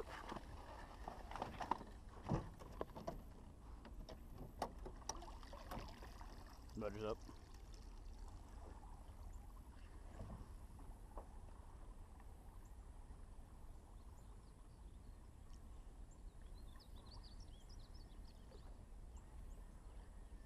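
A hooked alligator gar splashing and thrashing at the water's surface beside a small boat, with several sharp splashes or knocks in the first six seconds. After that it goes quieter, leaving a steady low rumble.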